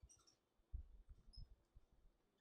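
Faint, scattered clicks of computer keyboard keys being pressed, a handful of separate key strokes against near silence.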